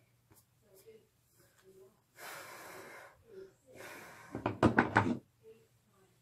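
Handling noise while a tangle is worked out of hair with a hairbrush: two short rustling hisses, then a quick cluster of knocks and thumps a little past the middle.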